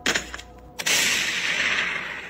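A sudden, loud, hissing crash sound effect, marking a character falling to the ground. A short knock comes first; a little under a second in, the loud crash sets in and fades away over about a second and a half.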